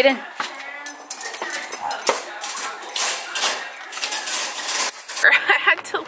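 Black metal wire dog crate rattling and clinking as a dog is put inside it, with a string of sharp metallic clatters over the first five seconds.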